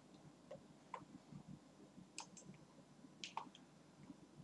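Near silence: room tone with a few faint, short clicks spaced irregularly, about one a second.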